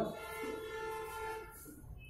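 A steady horn-like tone of several pitches held for nearly two seconds, fading near the end.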